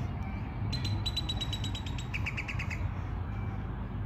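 A songbird singing a quick trill of high notes for about a second, which drops to a lower, slower trill, over a steady low rumble.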